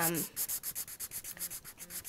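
Small felt-tip marker scribbling rapidly back and forth across notebook paper, colouring in a block of writing, at about six or seven scratchy strokes a second.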